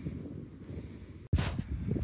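Wind rumbling on the microphone outdoors; about a second and a half in, the sound cuts off abruptly and comes back louder, with a brief rustle.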